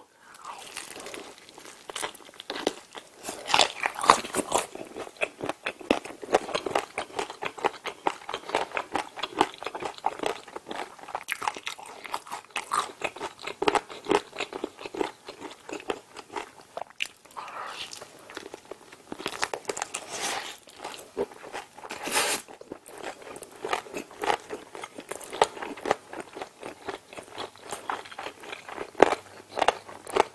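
Close-miked biting and chewing of a fried chicken drumstick: irregular crisp crunches of the fried coating, with a few louder bites along the way.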